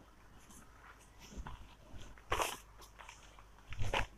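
Silk saree fabric rustling as it is unfolded and spread out by hand, a few short swishes with the loudest about two and a half seconds in.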